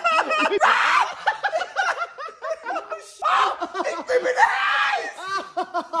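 A man laughing in rapid short bursts and screaming, with a long loud yell from about three seconds in.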